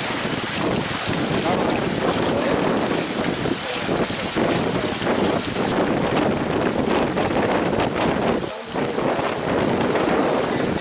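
Fountain water jets spraying and splashing in a steady, loud rush, with wind buffeting the microphone. The sound briefly dips about eight and a half seconds in.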